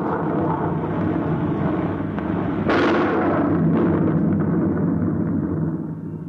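Sound effect of a rocket ship streaking overhead: a sustained rushing rumble. A second, sharper blast, the shockwave, comes about three seconds in, and the rumbling dies away near the end.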